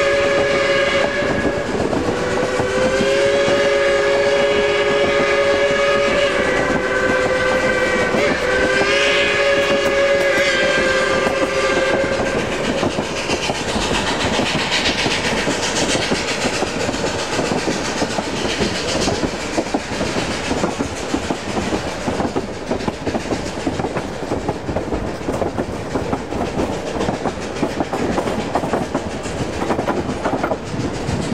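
Steam whistle of K-28 locomotive 473, a chime, sounded from up ahead of the train in a few long blasts over the first twelve seconds or so. Steady clatter of the narrow-gauge freight and passenger cars' wheels on the rail joints runs underneath and stands out once the whistle stops.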